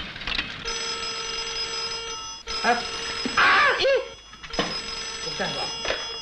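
Telephone bell ringing twice, each ring a steady ring of a little under two seconds, with a pause of about two seconds between them.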